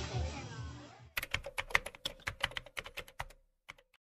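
Music dies away over the first second. Then comes a fast, uneven run of keyboard-typing clicks lasting about two seconds, a typing sound effect, with one last click shortly before the end.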